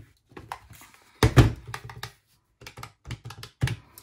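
Key presses on a desktop calculator with round, typewriter-style keys: a heavier thump with clicks about a second in, then a further run of separate clicks near the end.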